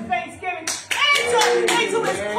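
A woman singing into a microphone with long held notes, with hands clapping along.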